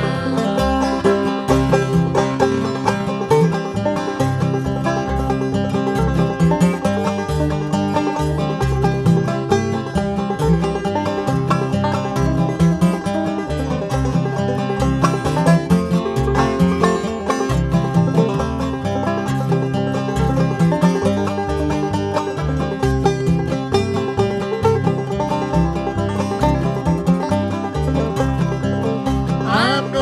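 Instrumental break of an old-time string-band song: banjo and flatpicked acoustic guitar playing together, the guitar walking a steady bass line under the picked melody, with no singing.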